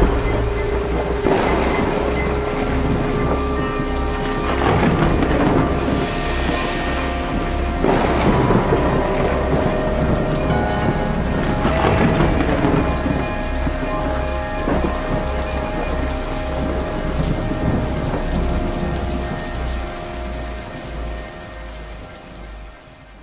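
Thunderstorm: steady heavy rain with rolls of thunder swelling every few seconds, over a faint steady music drone. It fades out near the end.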